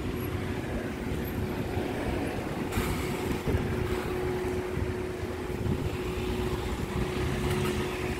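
Optare Metrodecker battery-electric double-decker bus driving off, with a steady hum over low road and tyre rumble. A brief knock comes about three seconds in.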